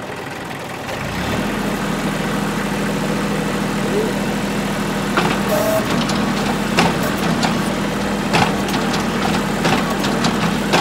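New Holland compact tractor engine running, its note rising and settling about a second in as the front-loader hydraulics lift the bucket. Several short knocks come in the second half.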